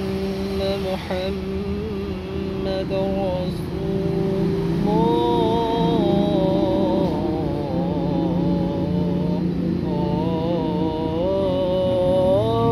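A man's solo voice chanting the adhan, the Islamic call to prayer, in long held notes with melismatic turns. The line swells and ornaments from about five seconds in and again near the end, over a low steady rumble.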